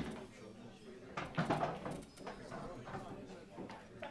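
Faint background talk and murmur in the room, with a single sharp click right at the start.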